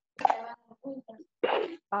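Brief, broken fragments of a voice over a video-call connection, cutting in and out with dead silence between them, then a short breathy hiss about one and a half seconds in.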